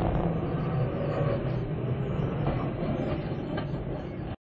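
Steady engine and road rumble inside a moving car, recorded by the dash camera's microphone, with a low drone that slowly fades. There is a light click near the end.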